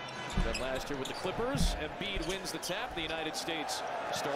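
A basketball being dribbled on a hardwood court, a series of short bounces, under a broadcast commentator's voice.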